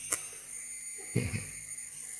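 A steady high-pitched whine in the sound system, heard through a pause in a man's talk at a microphone. A short vocal sound from the speaker comes a little past halfway.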